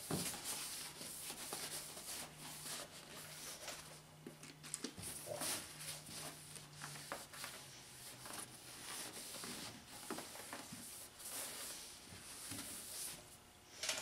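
Faint rubbing of a shop towel wiping glass cleaner over a plastic headlight lens, with a few light clicks and a faint steady low hum under it for the first half.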